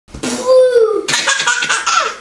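A baby laughing hard at being playfully startled: a drawn-out voiced note, then, about a second in, a breathier, higher-pitched laugh.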